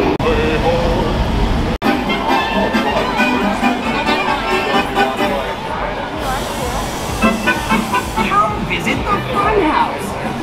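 Street crowd chatter mixed with music playing, over a low traffic rumble, with a brief drop in the sound about two seconds in.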